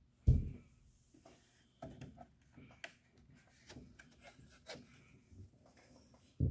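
Plastic speaker grille frame being pulled off the cabinet: a sharp thump about a third of a second in, then scattered clicks, knocks and scraping as the grille's pegs come free and the frame is handled.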